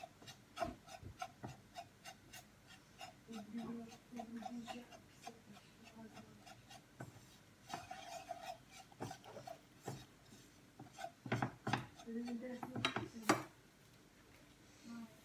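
A whisk scraping and stirring flour as it toasts in butter in a nonstick frying pan, in short rubbing scrapes a few times a second, with a few louder knocks of the whisk against the pan near the end.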